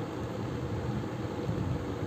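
Steady low background noise, a faint even hum and hiss picked up by the microphone in a pause between spoken sentences.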